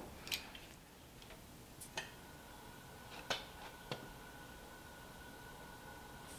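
A few faint, sharp metallic clicks from the dies of a motorized bead roller being tightened and set, about four in all, spread over several seconds. A faint steady high hum sets in about two seconds in.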